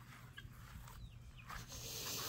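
Quiet outdoor ambience with a few faint, short bird chirps from the free-ranging poultry. A soft hiss rises near the end.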